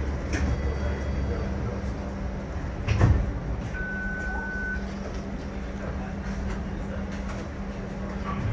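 Inside a TTC Flexity streetcar: a steady low hum with small rattles and clicks. About three seconds in there is one loud knock, followed shortly by a single high beep lasting about a second.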